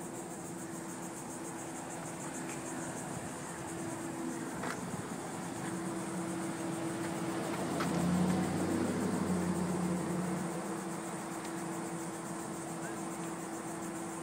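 Steady low hum of a motor vehicle's engine that swells to its loudest about eight seconds in and fades again by about eleven seconds, over a faint high hiss.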